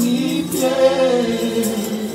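Women's voices singing a slow gospel worship song with held, drawn-out notes over a steady keyboard accompaniment.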